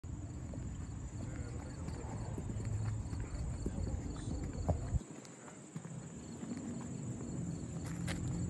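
Footsteps on pavement, a run of short, fairly regular steps, over a low rumble on the microphone that drops away about five seconds in.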